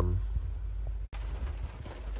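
Heavy rain on the van's roof, heard from inside as a steady hiss with a low rumble; the sound drops out for an instant about a second in, then carries on.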